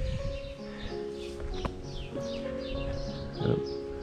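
Background music of long held notes changing pitch in steps, with birds chirping high above it.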